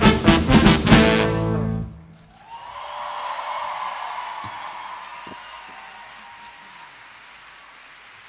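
Live band with a brass and saxophone section playing a run of short, loud chord hits that end the song about two seconds in. Audience applause and cheering then follows and slowly fades.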